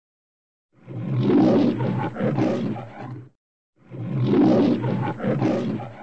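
A lion roaring twice, two bursts of about two and a half seconds each, the second a near copy of the first.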